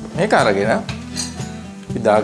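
A voice over steady background music, with light clinks of kitchenware.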